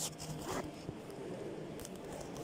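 A few short rasping scrapes packed into the first second.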